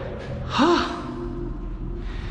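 A man's voice lets out a drawn-out 'ohh' about half a second in, its pitch rising and falling and then held, over a steady low machinery hum.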